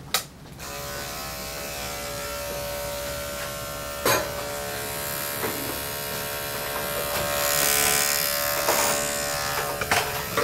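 Electric dog grooming clippers switched on with a click and running with a steady buzz from about half a second in, with a sharp knock about four seconds in.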